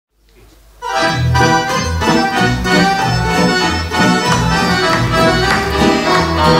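Roland digital accordion playing the opening of a folk tune, starting about a second in, over a regular pulse of low bass notes.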